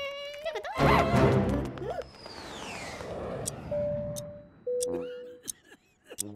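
Cartoon soundtrack of music and sound effects: a loud hit about a second in, a high whistle-like glide falling in pitch through the middle, and two short steady tones near the end.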